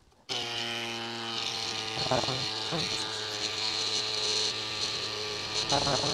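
CYCPLUS Tiny Pump electric mini bike pump switching on about a third of a second in and then running with a steady hum as it inflates a road bike tyre.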